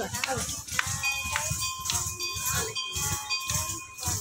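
Small ankle bells (gajje) jingling in time with the girls' rhythmic foot stamps, about three stamps a second, as they dance classical steps. Voices and a steady held tone sound alongside from about a second in.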